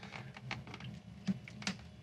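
Faint handling noise from a handheld digital multimeter, with a few light clicks as its rotary selector is turned to the diode test setting; two sharper clicks come past the middle.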